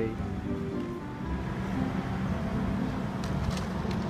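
Soft background music of held notes that step from one pitch to the next, over a low outdoor rumble.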